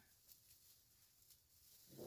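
Near silence: room tone, with a couple of faint ticks.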